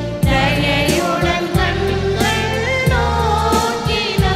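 Tamil church hymn sung with instrumental accompaniment, the wavering sung melody carried over steady low sustained notes that change every second or so.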